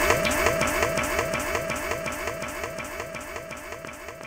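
Dub reggae from the vinyl record fading out: a sweeping electronic echo effect repeats about three times a second over a held tone, and the whole mix dies away steadily.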